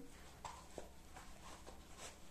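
Very faint handling sounds: a few soft ticks and rustles as a knitted slipper is fitted onto a plastic foot form.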